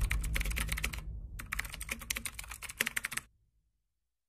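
Keyboard typing sound effect: two quick runs of rapid keystrokes with a short pause about a second in, stopping a little after three seconds. A low rumble fades out underneath.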